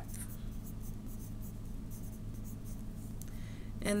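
Pen writing on notebook paper: faint scratching strokes over a steady low hum.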